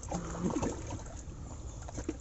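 Faint water sloshing from an American Staffordshire Terrier paddling as it swims, with a brief faint voice about half a second in.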